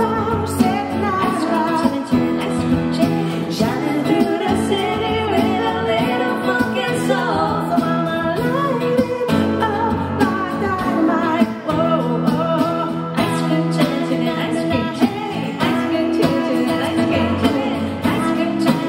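Live pop song: a woman singing into a microphone over acoustic guitar and keyboard accompaniment.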